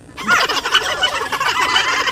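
A turkey gobbling close by: one loud, rapid warbling rattle that lasts nearly two seconds.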